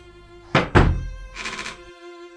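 A single heavy thud about half a second in, its low boom dying away over the next second, followed by a fainter rush around a second and a half in, over soft background music.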